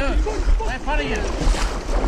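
Voices calling out over steady wind buffeting the microphone, with a noisy hiss of moving water and air.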